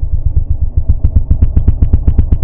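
Husqvarna Nuda 900R's parallel-twin engine running at low revs, its exhaust giving a lumpy, evenly spaced beat of about ten pulses a second that grows a little stronger partway through.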